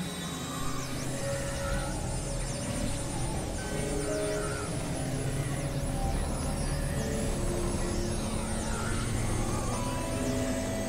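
Experimental electronic synthesizer music: a dense, noisy drone with scattered held notes at shifting pitches and many quick high pitch sweeps dipping and rising.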